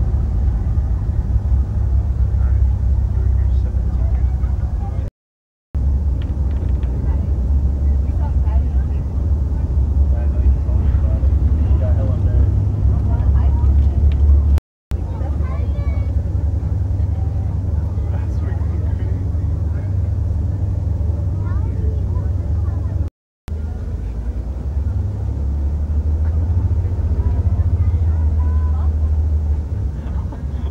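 Steady low rumble of a car driving on the road, heard from inside the cabin, with indistinct voices over it. The sound cuts out completely for a moment three times, at edit cuts.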